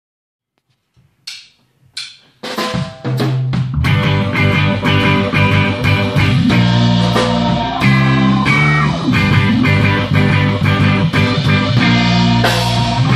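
Live reggae band playing the instrumental intro of a song. After a near-silent start and two sharp hits, drum kit, electric guitar and keyboard come in together about three seconds in and play on steadily, without vocals.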